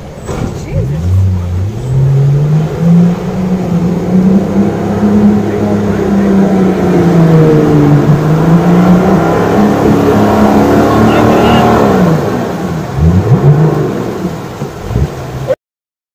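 A four-wheel drive's engine revving hard under load as it drives through deep creek water, with water rushing around it. The revs climb in the first couple of seconds, waver while held high, then drop back near the end with a couple of short blips before the sound cuts off abruptly.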